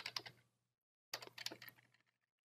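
Typing on a computer keyboard: a short run of keystrokes at the start, a pause of about half a second, then another short run of keystrokes.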